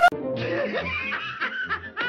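A cartoon character's voice laughing over background music with a low, regular beat.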